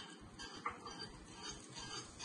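Butter melting with a faint sizzle in a hot non-stick frying pan, pushed around with a spoon in a few soft scrapes.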